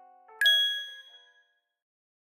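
A single bright chime ding, about half a second in, ringing out and fading away within a second: a logo sting. Just before it, the last soft notes of background music die away.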